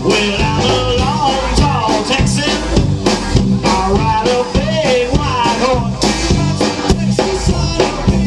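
Live rock band playing at full volume: electric guitar, electric bass and a stand-up drum kit keeping a steady beat, with a male lead vocal sung over the top.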